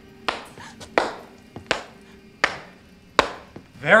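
One person slow-clapping: five single hand claps, evenly spaced about three quarters of a second apart.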